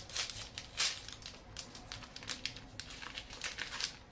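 A foil trading-pack wrapper being torn open and crinkled by hand: irregular, crackly tearing and rustling, loudest in the first second and then softer and sparser.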